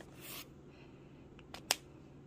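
Quiet desk handling while changing markers: a short soft swish just after the start, then a single sharp click a little before the end.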